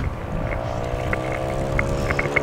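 Motorboat engine running out on the water: a steady hum whose pitch falls slowly as it goes by.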